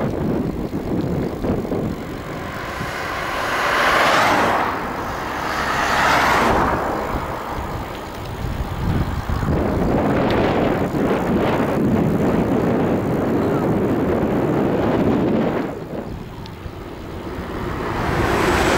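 Traffic passing on the road beside a moving bicycle. Two vehicles swell and fade about four and six seconds in, and more pass near the middle, over steady rumbling wind and road noise on the microphone.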